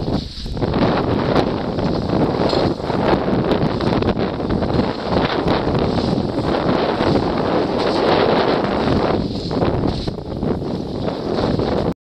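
Strong wind buffeting the microphone: a loud, dense, steady rush that eases briefly about nine seconds in.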